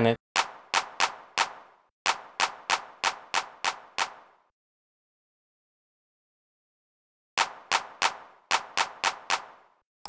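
A handclap sample played in FL Studio, struck again and again about three times a second in three runs, with a gap of about three seconds in the middle. Its pan is moved between left and centre under the circular pan law, which raises the gain as the sound is panned off centre.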